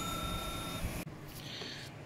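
The tail of a bell-like notification chime sound effect from a subscribe-button animation, a steady two-note ring that stops a little under a second in. A hiss underneath cuts off suddenly about a second in, leaving only low room noise.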